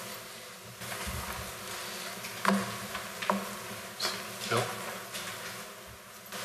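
Meeting-room background noise during a pause: a steady low hiss and murmur, with a brief low rumble about a second in and about four short clicks or knocks in the second half.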